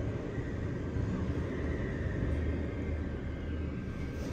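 ThyssenKrupp scenic traction elevator car traveling in its glass hoistway: a steady low ride rumble with a faint high tone that fades, the rumble easing near the end.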